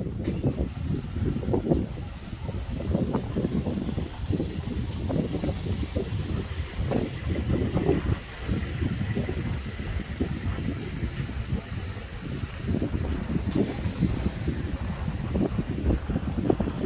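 Wind buffeting the microphone as a low, uneven rumble, over light street sound, with a car moving slowly past close by about halfway through.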